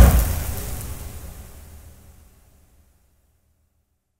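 Logo-reveal sound effect: a deep boom with a hissing whoosh, loudest at the start and fading away over about three seconds.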